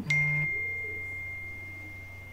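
A single high ding: one clear tone that starts sharply and fades away slowly over a few seconds, like a chime or a struck bell.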